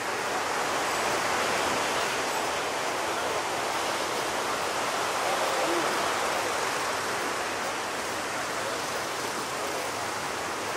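Ocean surf breaking, a steady, even rush of whitewater with no single distinct crash standing out.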